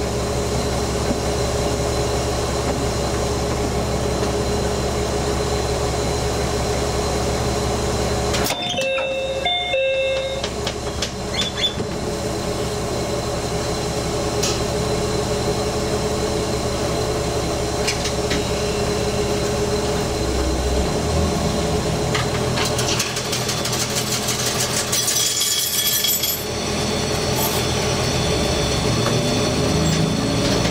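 Diesel railcar engine idling steadily while the train stands at a platform, then rising in pitch near the end as the train pulls away.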